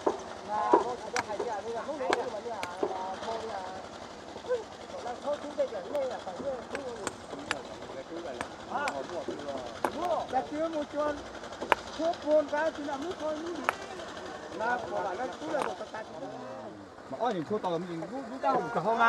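Hand hammers striking rock as stones are broken into gravel by hand: sharp, irregular clinks, often a second or so apart, over women's voices chattering throughout.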